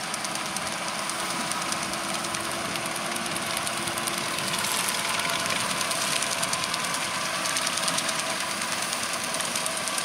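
Fendt 720 Vario tractor's six-cylinder diesel running steadily under load while pulling a rear-discharge muck spreader, with a fast rattle from the spreader's beaters flinging muck. The sound grows steadily louder as the rig comes nearer.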